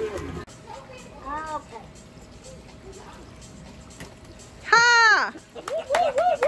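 People's voices calling out around a swimming pool, faint at first, then a loud high-pitched exclamation about five seconds in, with more calls just after; faint water sounds underneath.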